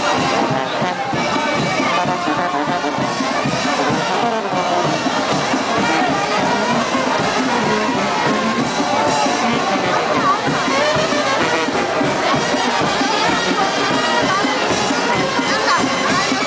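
A brass band plays loud, continuous music for the chinelo dance, with crowd voices mixed in.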